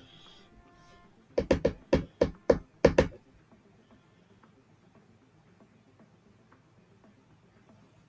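A quick run of sharp knocks, about eight in under two seconds, starting about a second and a half in; then only faint background noise.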